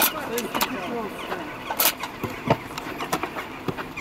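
Outdoor football on artificial turf: players' voices calling out briefly at the start, then scattered knocks and thuds of ball contacts and running feet, with one sharp crack a little before the midpoint and a heavier thud just after it.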